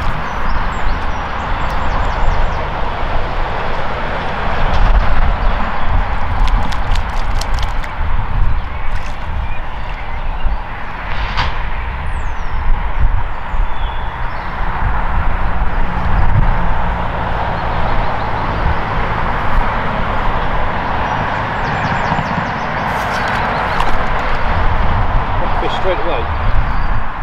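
Steady outdoor background noise with a low rumble, in keeping with traffic on a road running beside the pond. A few faint clicks come about six to eight seconds in.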